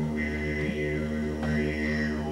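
A man's low, steady vocal drone into a microphone, held without words, its upper tones shifting slowly as the mouth changes shape.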